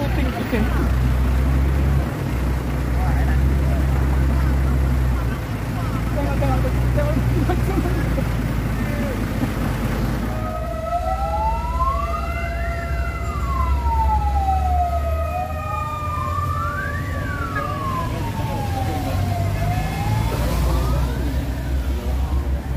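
Low engine rumble, then from about halfway through a wailing siren whose pitch sweeps up and down about three times in slow cycles.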